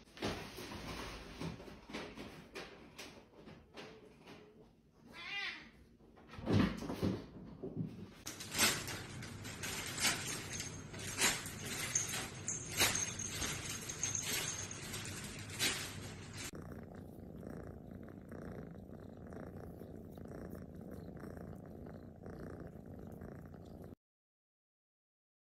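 Domestic cats: a short meow about five seconds in, then a run of sharp taps and clicks, and from a little past the middle a steady, evenly pulsing cat purr.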